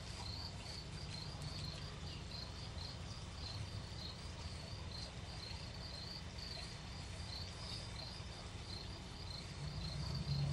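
A steady run of faint, high, cricket-like chirps, about three a second, over a low hum.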